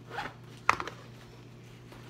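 A bag being handled: a brief rasp near the start, then one sharp click about two thirds of a second in, followed by a few lighter clicks.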